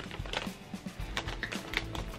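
Scattered light clicks and crackles from handling a crisp maple cream cookie over its plastic packaging tray.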